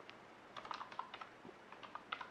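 Faint computer keyboard keystrokes: a light, irregular patter of key taps as a word is erased and another typed, more of them in the second half.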